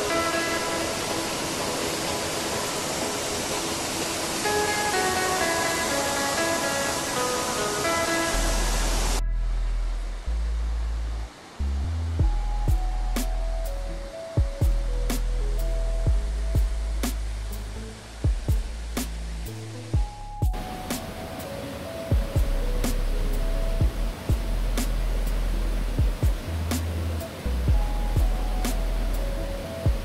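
Background music with a melody, a deep bass line and sharp percussion ticks. The steady rush of a waterfall runs under it for about the first nine seconds, drops out, and comes back about twenty seconds in.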